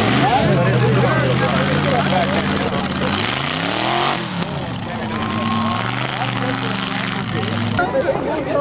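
Lifted mud-bog vehicle's engine running steadily, then revving up to a peak about four seconds in and dropping back to a steady note, with crowd chatter behind it.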